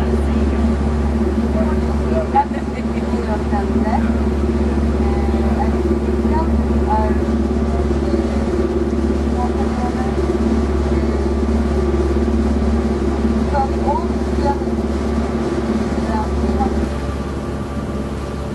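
Steady low drone and hum of a tour boat's engine running at cruising speed, heard from on deck, with faint indistinct voices in the background.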